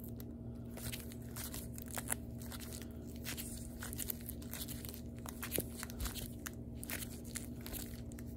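Rigid plastic card holders clicking and scraping against each other as a stack of trading cards is flipped through by hand: many small irregular clicks over a steady low hum.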